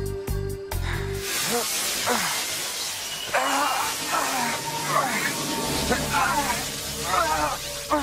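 Background music with a beat stops about a second in, giving way to a steady hiss. Over the hiss come a few gliding tones and, from about three seconds in, bursts of warbling, wavering tones: a magical transformation sound effect.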